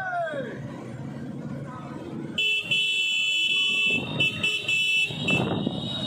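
A column of motorcycles running together on a road. From about two and a half seconds in, a horn sounds in long steady blasts broken by a few short gaps.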